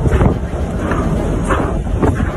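Gale-force storm wind buffeting the phone's microphone in gusts, with surges about a quarter second and a second and a half in.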